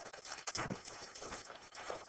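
Faint handling noise: a dense run of quick, irregular clicks and rustling.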